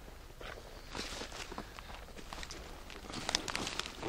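Light splashing and sloshing of water at the bank's edge as a large pike is held in the shallows and let go, with scattered rustles of clothing and dry grass. The splashes grow busier near the end as the fish pulls free and swims off.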